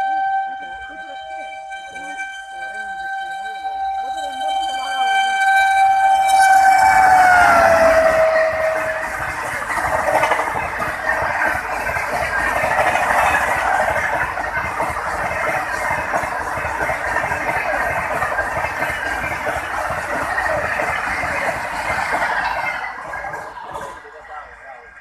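Electric locomotive of a Rajdhani Express sounding one long horn blast as it approaches at full speed, the horn's pitch dropping as it passes about seven seconds in. Then the coaches rush past with a steady clatter for about fifteen seconds, cutting off near the end as the last coach goes by.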